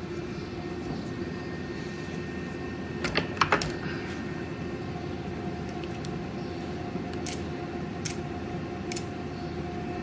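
A few sharp metal clicks as the steel parts of a lube pump head are handled and worked loose: a quick cluster of three or four about three seconds in, then single faint ticks later, over a steady background hum.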